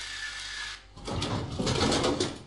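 Soda vending machine's bill acceptor drawing in a paper bill with a short motor whirr. About a second in, a louder mechanical rattle and rumble from the machine follows.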